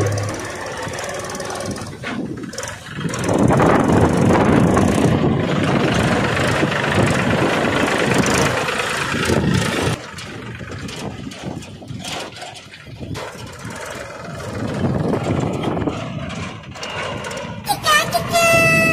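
Homemade mini tractor's small engine running as it drives along a dirt road, louder for a few seconds from about three seconds in, with children's voices over it.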